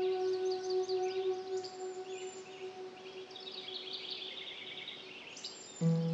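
A Tibetan singing bowl's ringing tone dying away over about five seconds, with birds chirping throughout. Near the end a new musical chord comes in loudly.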